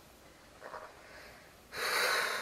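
A woman's loud, breathy gasp or snort through nose and mouth near the end, after a quiet pause.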